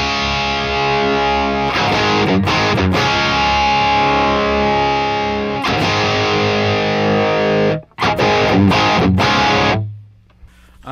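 Les Paul-style electric guitar played through a Friedman Dirty Shirley overdrive pedal with its mids turned up, into a vintage blackface amp head: distorted chords ringing out, then short stabbed chords after a brief break near eight seconds, stopping at the end.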